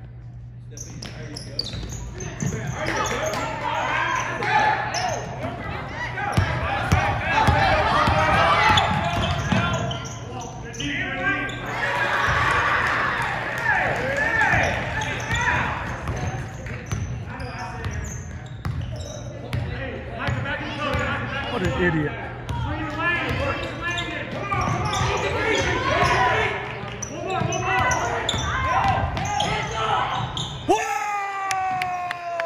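A basketball bouncing and being dribbled on a hardwood gym floor, among voices of spectators and players talking in the echoing gymnasium.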